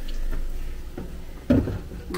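Kitchen cupboard being handled: a light click about a second in, then a louder knock about one and a half seconds in, over a low steady hum.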